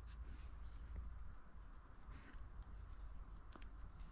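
Faint rustling and light scratching of a thin cord being handled as a double fisherman's knot is set in place, with a few small clicks scattered through.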